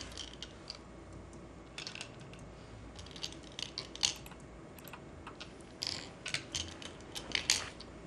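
Go stones clicking onto a wooden Go board, a dozen or so sharp, irregular clicks, some in quick pairs, as the last neutral points are filled at the end of the game.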